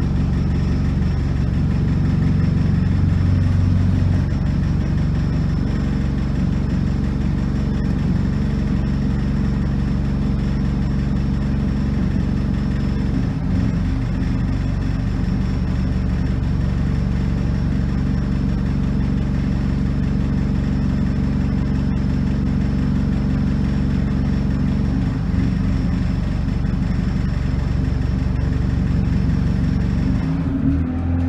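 Bus engine idling, heard from inside the passenger cabin as a steady low drone.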